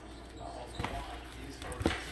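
Soft handling noises from a nitrile-gloved hand working a raw ground turkey patty loose from its plastic tray and paper liner, with two faint knocks about a second apart.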